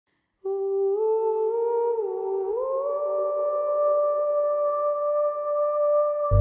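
A single voice humming the opening of a song: it holds a note, wavers and dips about two seconds in, then slides up to a higher note and holds it.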